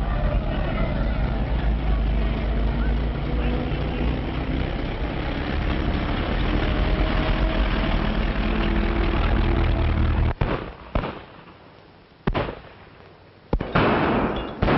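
Battle sound effects on an old film soundtrack: a dense, continuous roar of gunfire and explosions with men shouting. About ten seconds in it drops away to a few separate sharp shots, and the din comes back near the end.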